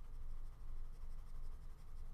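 Stylus scribbling quickly back and forth on a tablet screen while shading in an area: a run of faint, rapid, scratchy strokes.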